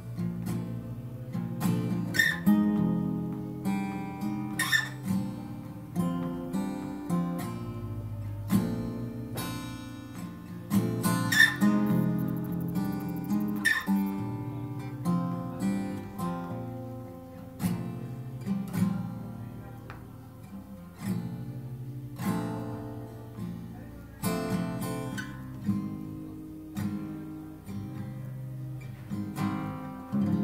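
Solo acoustic guitar playing an instrumental piece, with chords picked and strummed and left to ring between strokes. The strongest strokes fall at about 2.5, 5, 11.5 and 14 seconds in.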